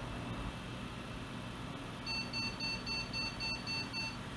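Computer motherboard speaker sounding a rapid run of short, high-pitched beeps, about four a second, starting about two seconds in. This is the BIOS POST beep code signalling a video card error: the system cannot initialise its graphics card, and the monitor stays black.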